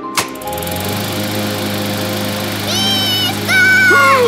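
A switch clicks, then an electric floor-sanding machine starts and runs with a steady low hum, under background music.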